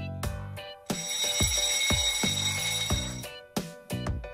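An alarm-clock bell ringing for about two seconds, starting about a second in, signalling that the countdown timer has run out. It plays over background music with a steady beat.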